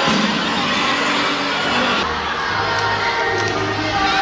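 A crowd of young children shouting and chattering together in a large indoor gym.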